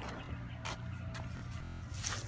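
A short, low buzzing burp near the end, a liquidy burp that brings a little up into the mouth, over a steady low rumble of wind on the microphone.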